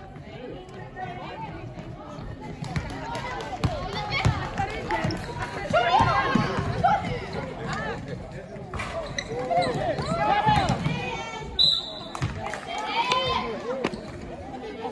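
A basketball bouncing on a sports hall floor during a game, mixed with players' voices calling out in the echoing hall. The voices are loudest about halfway through and again near the end.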